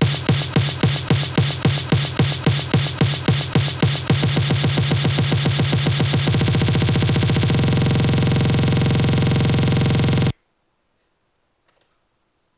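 Overly compressed, distorted electronic snare drum sample retriggered by note repeat: a snare roll build-up, starting at about four hits a second and stepping faster every couple of seconds until the hits blur into a continuous buzz. It cuts off suddenly about ten seconds in.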